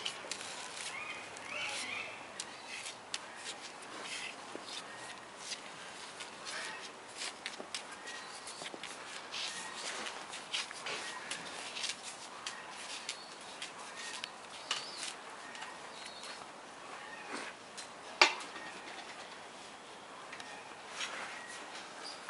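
Brown bear cub's claws and paws clicking and tapping irregularly on a tiled floor, with a few faint bird chirps near the start and one sharper knock about 18 seconds in.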